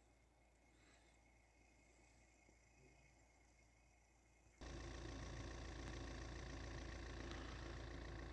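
Near silence for the first half. Then, a little past halfway, the steady running noise of a vehicle driving on a snowy road cuts in abruptly, a low rumble with even road noise over it.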